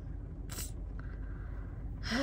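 Low steady rumble inside a car, with a short rustle about half a second in and a faint click near one second.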